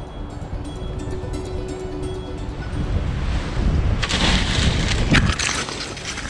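Wind rushing and buffeting over a microphone during a low paragliding flight, swelling loud about four seconds in, with quiet music underneath.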